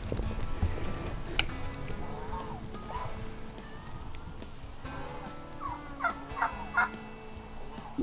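Farm poultry calling in the background: drawn-out steady calls and short clucks, with a sharp click about one and a half seconds in.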